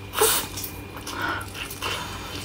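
Close-miked mouth sounds of eating roast meat: a short, loud sucking noise about a quarter second in, then quieter chewing and smacking.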